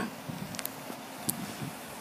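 Faint steady outdoor background noise on a parking lot, with a few soft ticks.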